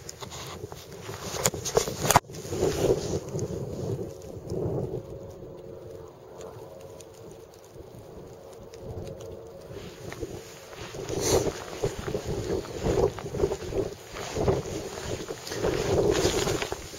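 Wind noise on the microphone of a handheld camera, with handling noise and rustling that grow choppier in the last few seconds. There is one sharp knock about two seconds in.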